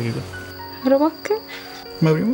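A short spoken word about a second in, over soft background music that holds sustained tones, with a thin, steady high-pitched tone running underneath.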